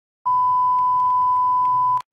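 Television colour-bar test tone: one steady, pure beep held at a single pitch, starting about a quarter second in and cutting off suddenly.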